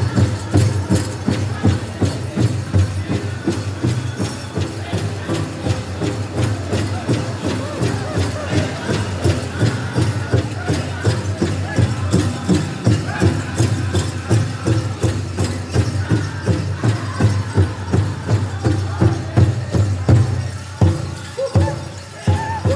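Powwow drum group singing a grand entry song: many voices together over a steady, even beat struck on a large shared drum, with a brief break near the end.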